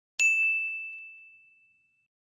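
A single bright ding, struck about a quarter second in and ringing out, fading over about a second and a half: the notification-bell chime sound effect of an animated subscribe button.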